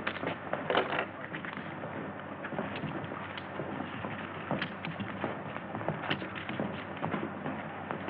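Steady hiss of a vintage film soundtrack, with scattered clicks and crackles and a brief louder sound about a second in.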